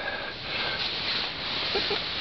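Steady rushing noise of wind and rustling, with a brief faint voice sound near the end.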